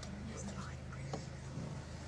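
Faint whispered human voices over a steady low hum, with a soft click about a second in.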